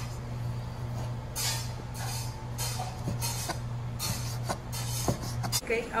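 Large chef's knife chopping pork ribs into pieces on a plastic cutting board: a series of irregular knocks as the blade hits the board. A steady low hum runs underneath and stops near the end.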